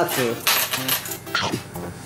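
Metal game medals clinking against each other as a heaped cupful of them is pressed down and handled, with sharp clinks about half a second in and again near the middle.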